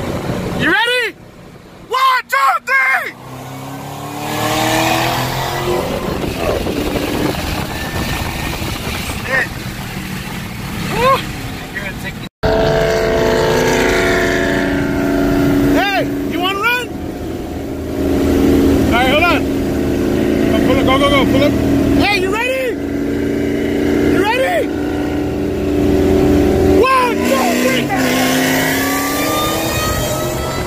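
Supercharged 5.8 L V8 of a 2014 Shelby GT500 heard from inside the cabin while cruising, with road and wind noise; the revs climb steadily for several seconds early on, then hold steadier after a sudden cut. Short rising-and-falling chirps sound over it again and again.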